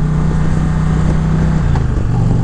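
Indian Challenger's liquid-cooled V-twin running at a steady cruise, heard from the rider's seat, with wind and road rush on the microphone. Near the end the engine note drops and changes.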